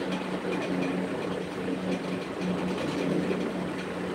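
Steady background noise with a faint low hum.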